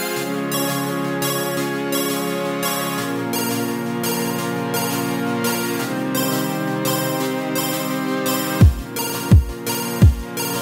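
Instrumental electronic music: sustained synth chords over a rhythmically chopped, pulsing high layer, with the bass note stepping down twice. Near the end a deep kick drum comes in, each beat dropping in pitch, about one and a half beats a second.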